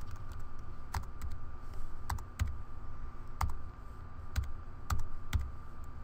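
Typing on a computer keyboard: irregular keystrokes, some close together and some a second or so apart, as a line of code is entered.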